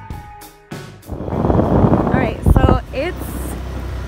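Background music stops about a second in. It gives way to wind buffeting the microphone and the steady low drone of a moving vehicle's engine, with a brief voice in the middle.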